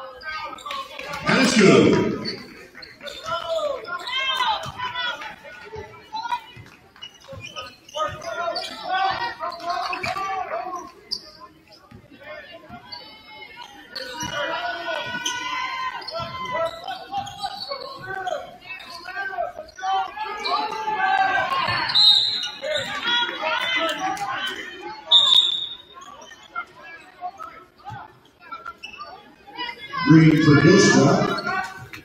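Basketball game sound in a gym: indistinct shouting and chatter from players and spectators over a basketball being dribbled on the hardwood court, with a couple of short high squeaks near the end.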